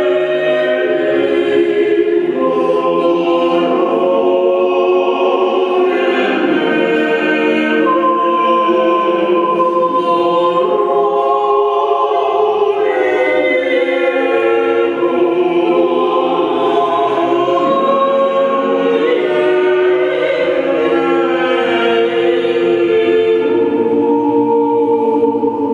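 Mixed vocal octet singing a cappella in several voice parts, sustained notes moving together in harmony without pause.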